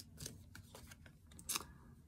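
Oracle cards being handled: a few faint, brief brushing sounds of card stock sliding, the loudest about one and a half seconds in.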